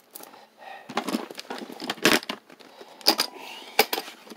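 Small hard objects being handled and rummaged through in a box: light rattles and a few sharp clicks about a second apart.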